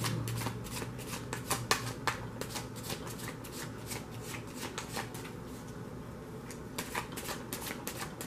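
A deck of tarot cards being shuffled by hand, the cards clicking and slapping against each other in quick, irregular strokes. The strokes are busiest in the first couple of seconds and again near the end, and thin out in between.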